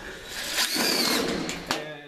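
Cordless impact driver running for about a second with a whine that rises and falls, driving a self-tapping sheet-metal zip screw through the galvanized flange of a duct takeoff into the duct. A couple of sharp clicks follow near the end.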